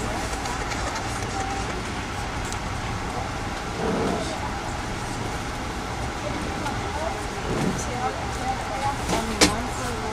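Steady rumble and running noise inside a moving Amtrak passenger coach, with a murmur of voices under it. There is a single sharp click near the end.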